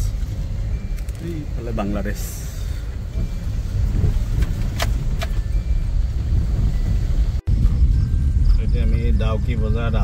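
Steady low rumble of a car's engine and tyres heard from inside the cabin while driving. The sound cuts out for a moment about seven seconds in.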